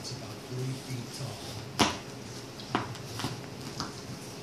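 Small dogs chewing on their toys: sharp clicks of teeth on the toy, the loudest a little under two seconds in and a few smaller ones after. Low grunting sounds come on and off through the first half.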